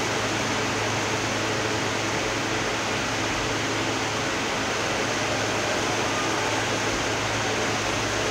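Steady background hiss with a low, constant hum, unchanging throughout.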